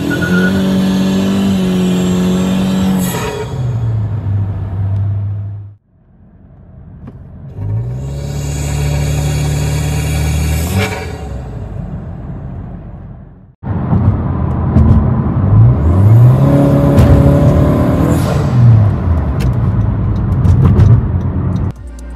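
Turbocharged 1.5-litre four-cylinder of a 10th-gen Honda Civic pulling hard through a short-ram intake with a K&N filter, heard from inside the cabin: the engine note rises, holds and falls in three pulls cut together. Each pull ends with a brief hissing whoosh from the blow-off valve as the throttle closes.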